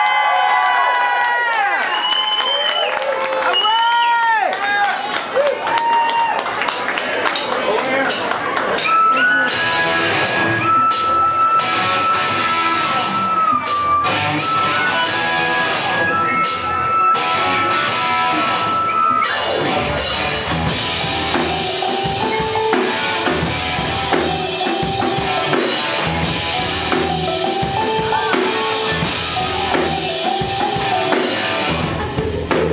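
Live electro-fuzz rock band starting a song, with audience whoops and cheers at the start. About nine seconds in, a steady drum beat begins under a long held high note, and about twenty seconds in the full band comes in with electric guitar and keyboard.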